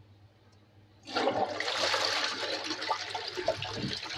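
A loud rush of water that starts suddenly about a second in and keeps running steadily.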